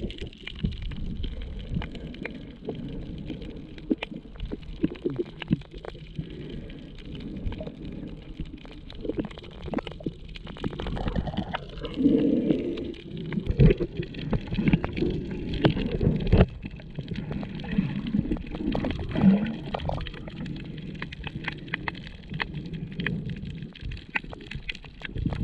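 Muffled underwater sound picked up by a camera below the surface: irregular low sloshing and gurgling of moving water with scattered small clicks and knocks, louder about halfway through as the snorkeler swims close.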